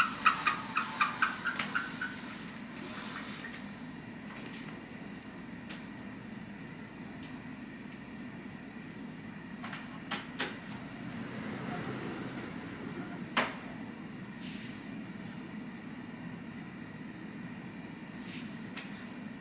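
Curtains drawn back by a pull cord: a quick run of about a dozen rattling clicks in the first two seconds, then a few sharp clicks around ten and thirteen seconds in, over a steady low room hum.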